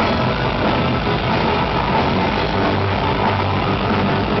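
Live rock band playing loud, heavily distorted electric guitars in a steady, unbroken wall of sound with no singing, heard through a crowd-held camera microphone.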